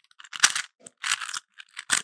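Rubik's Cube being turned by hand: a run of short plastic clicks and scrapes as its layers are rotated.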